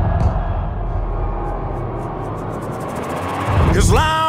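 A loud, steady low rumble mixed with noise and faint music; near the end a sound sweeps up in pitch.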